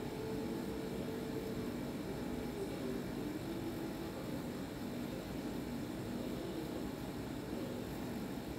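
Steady background hiss with a faint low hum, unchanging throughout, with no distinct sounds standing out.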